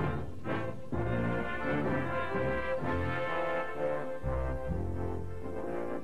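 Ceremonial brass title music: low brass holding a slow series of sustained chords over a deep bass.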